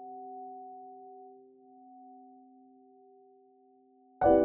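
A piano chord left ringing, its few steady notes slowly dying away.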